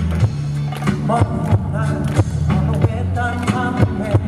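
A live band plays a pop ballad through a concert PA, with a steady bass line and a regular drum beat. From about a second in, a male voice sings a gliding melody over it.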